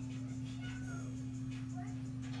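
A steady low hum, with a faint brief high call that rises then falls about three-quarters of a second in and another faint short call near the end.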